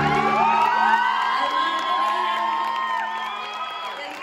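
Audience cheering and whooping at the end of a song, as the band's final chord dies away about half a second in.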